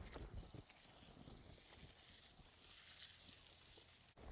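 Near silence: faint outdoor ambience, with a few soft low thumps in the first second.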